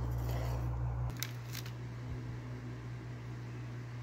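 Steady low hum of room noise that changes abruptly about a second in, followed by two short crisp clicks or rustles, then quieter room tone.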